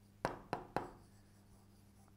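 Stylus tapping and stroking on the glass of an interactive display panel while writing a word: three sharp taps within the first second, then only faint room tone.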